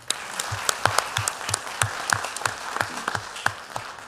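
Audience applauding, many people clapping at once, tailing off near the end.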